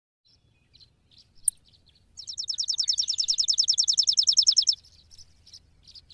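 Small bird chirping: a few scattered high chirps, then a fast, high trill of rapidly repeated notes lasting about two and a half seconds, followed by a few more chirps.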